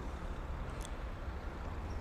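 Steady low rumble of street traffic outdoors, with one faint click a little before halfway through.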